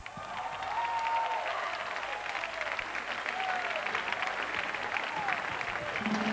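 Concert audience applauding steadily, with a few rising-and-falling whistles over the clapping.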